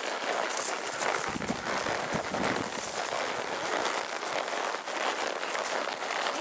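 Steady rustling and crackling of leafy brush brushing past a horseback rider on a narrow overgrown trail, with a couple of soft low thuds about one and a half and two seconds in.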